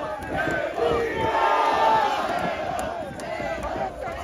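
Wrestling crowd yelling and cheering, many voices overlapping with some long held shouts, swelling about a second in.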